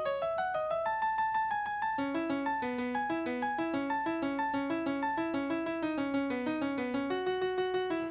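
Sampled acoustic grand piano voice (General MIDI) playing a fast, even stream of single notes, about six a second, as a Markov chain generates a new melody from the pitches of a sung melody. Many notes repeat on one pitch, with occasional big leaps.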